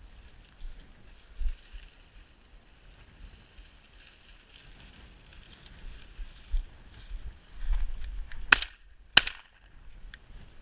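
Two 12-gauge shotgun shots fired in quick succession, about two-thirds of a second apart, near the end, from a Tri Star semi-automatic shotgun at flushing quail. Before the shots there is low wind noise on the microphone as the shooter moves through dry grass.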